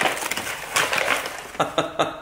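Brown paper bag rustling and crinkling as hands open it and reach inside: a dense run of short crackles.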